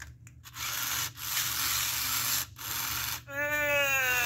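A 1998 Gen 1 Furby's internal motor and plastic gears running in three short grinding stretches as it wakes and moves its eyes, ears and beak. Near the end its electronic voice starts, a wavering call.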